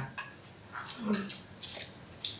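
Chopsticks clicking lightly against small bowls and the wok as people eat from the hot pot: a few short, scattered clinks.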